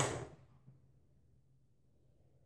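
Near silence: room tone with a faint steady low hum, after a brief sound right at the start that fades within half a second.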